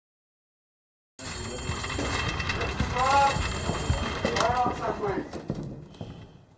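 Silence for about a second, then a person's voice over a noisy background full of small clicks.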